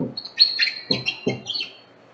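A bird chirping in the background: a quick run of short, high chirps that stops shortly before the end, with a few soft low thumps among them.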